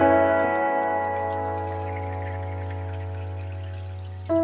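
Slow meditative piano music: a chord struck just before rings on and slowly fades over a sustained low note, with no new note played. Faint running water sounds underneath.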